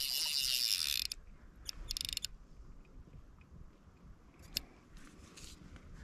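Fly reel drag buzzing in a fast ratchet as a hooked Sonora sucker runs and pulls line off the reel for about a second, then again in a shorter burst about two seconds in.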